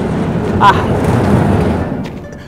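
Heavy sliding metal gate pushed open by hand, rolling along its track with a steady rumbling noise that eases off near the end. A short grunt of effort comes about halfway through. The gate is said to need grease.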